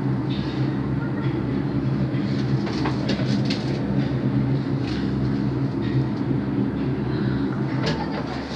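Cable car ropeway machinery running with a steady low mechanical hum, with scattered clicks and rattles.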